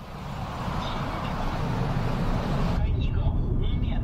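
Car driving past on a street, a steady rush of engine and tyre noise that fades in. About three seconds in it gives way to the muffled hum inside a car's cabin, where a man's voice on the car radio starts telling a traditional Chinese pingshu story.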